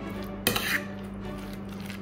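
Metal spoon stirring a wet mix of grated cheese, milk and egg in a stainless steel bowl, with one sharp clink of spoon on bowl about half a second in.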